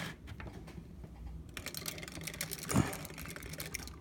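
Plastic action figures being handled and moved on a wooden table: a quick run of light plastic clicks and taps, with one heavier knock about three-quarters of the way through.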